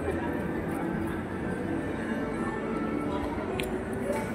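Background music with steady held tones over a low rumble, with a single brief click near the end.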